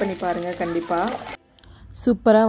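A woman's voice speaking, cut off abruptly a little past halfway, followed by a brief hush and a single click near the end.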